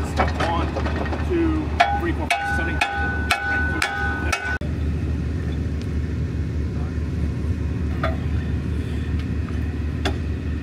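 Steel-on-steel blows from a small sledgehammer driving a pin into a heavy wrecker's rear recovery hitch, each strike ringing, about two a second, stopping abruptly near the middle. A heavy truck's diesel engine runs steadily underneath throughout.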